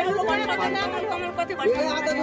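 Several people talking over one another: a lively babble of voices at close range.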